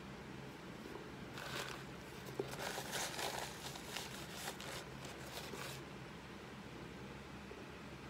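Paper napkin rustling and crinkling for about four seconds as it is wiped across the mouth.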